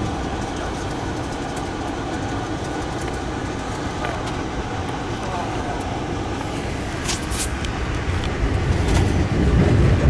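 Passenger train running, heard from inside the coach: a steady rumble of wheels on rails, with a few brief clicks about seven seconds in. The rumble grows louder near the end as the train rolls onto a steel truss bridge.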